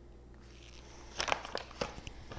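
Paper flour bag crinkling as type 00 flour is poured softly into a steel bowl, then a few sharp crackles and taps about a second in as the bag is handled and set down on the counter.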